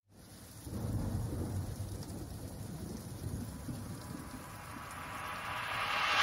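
Quiet rumbling noise like thunder with a rain-like hiss, the atmospheric sound-effect intro of a song, starting about half a second in after silence. A hiss swells steadily over the last couple of seconds, building toward the song's entry.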